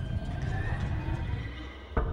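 A horse whinnying in a wavering, gliding call over a low rumbling film score, followed by a single sharp click just before the end.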